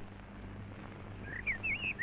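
A small bird chirping in several quick, wavering high notes in the second half, over a faint low steady hum.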